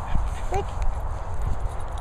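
Low rumble of wind and handling noise on a handheld camera's microphone, with soft thuds, and one brief short call about half a second in.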